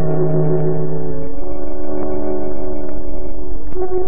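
Violins and piano of a small tango orchestra holding long sustained notes, the chord changing about a second in and again near the end, over the steady low hum of an old 16mm film soundtrack.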